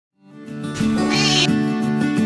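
Background music starting up, with a short, high kitten mew about a second in.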